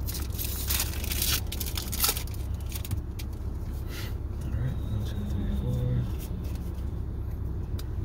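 Foil booster-pack wrapper crinkling and tearing open for the first few seconds, followed by quieter handling of the trading cards. A steady low rumble runs underneath inside the car.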